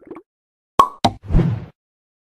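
Sound effects for an animated end card: two sharp clicks close together just under a second in, then a short low burst.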